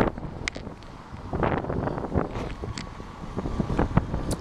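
Wind buffeting the camera's microphone, with a few brief knocks along the way.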